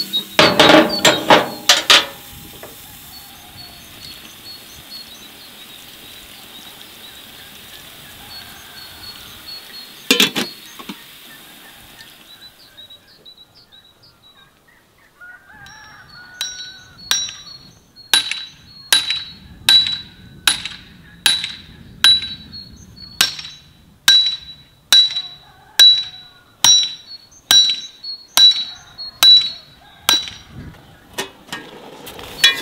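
Metal pot and lid clinking for about two seconds at the start. Later, from just past halfway, a hammer strikes metal over and over, steadily, about one and a half blows a second, each blow ringing, with faint bird chirps behind.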